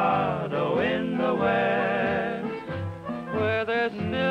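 Cowboy-style song with wordless yodeled singing, the voice swooping down and back up in pitch with vibrato, over an orchestral accompaniment with a repeating bass note.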